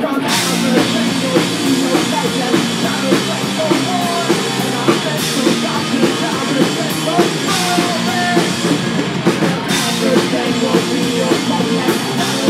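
Live rock band playing a punk-rock song: electric guitars, bass guitar and drum kit, loud and steady throughout.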